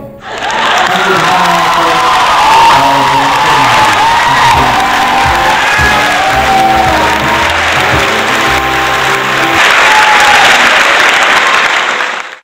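Audience applauding after a swing song ends, with instrumental music playing on underneath; the clapping swells near the end.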